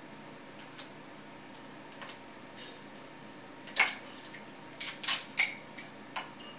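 Sticky tape pulled off a roll and torn in short rips, with paper paint-sample strips handled and pressed down. A few faint rips, then louder ones in the second half.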